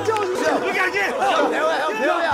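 Several people shouting and laughing at once, their voices overlapping in excited chatter.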